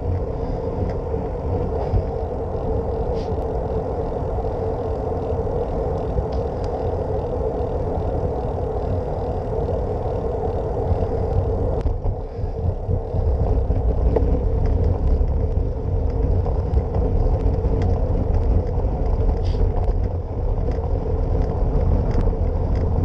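Steady riding noise from a moving bicycle: tyres rumbling on a paved trail, with wind buffeting the handlebar-mounted camera's microphone. About twelve seconds in the bike rolls onto a bridge deck, and after a short dip the low rumble grows louder.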